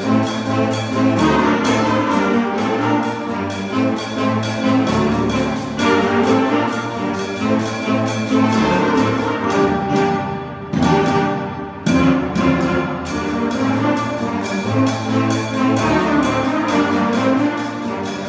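Student jazz big band playing: saxophones and brass over a drum kit keeping a steady beat. The beat drops out for about two seconds past the middle, then comes back in.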